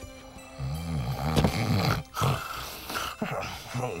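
A deep voice making low, growly, wavering sounds over soft background music, then breaking into a laugh near the end.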